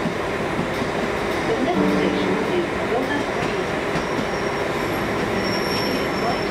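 A steady, loud rumble of urban traffic noise, of the kind the tagger hears as a train, with a brief pitched tone about two seconds in.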